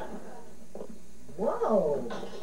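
A person's short wordless vocal sound, sliding up and down in pitch, about one and a half seconds in after a quiet start.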